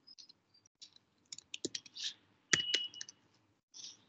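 Typing on a computer keyboard: a scattering of separate key clicks, the loudest of them about two and a half seconds in.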